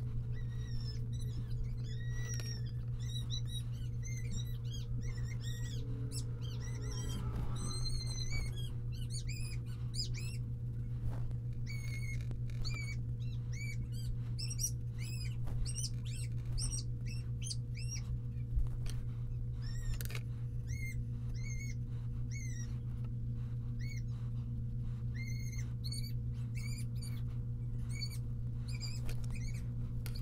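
A small bird chirping in short high calls, about two a second, over a steady low hum.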